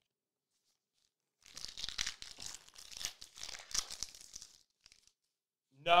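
Thin plastic card sleeve crinkling and rustling as a trading card is slid into it and then into a rigid plastic top loader. The irregular crinkling lasts about three seconds, starting about a second and a half in.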